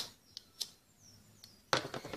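Quiet handling of a plastic lighter and a ribbon end: two faint clicks in the first second, then a louder knock near the end as the lighter is set down on the table.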